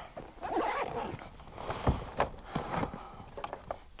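Fishing gear being handled in a canoe: rustling and scattered small clicks, with a dull knock against the hull about two seconds in.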